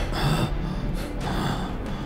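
A man gasping for breath, two heavy breaths about a second apart, over low background music.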